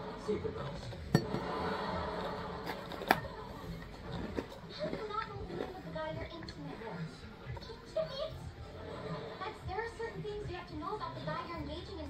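Faint background voices and chatter, with two sharp clicks about a second and three seconds in.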